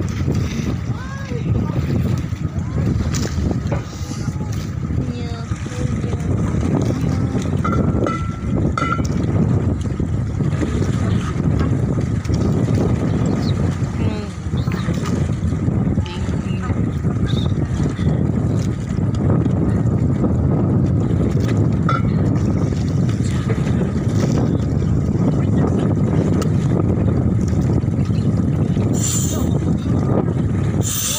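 Outrigger dive boat's engine running steadily at idle, a continuous low rumble with a faint steady whine above it. Faint voices come and go over it.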